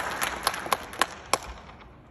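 Audience applause dying away: the crowd noise thins to about four scattered hand claps and fades out about three-quarters of the way through.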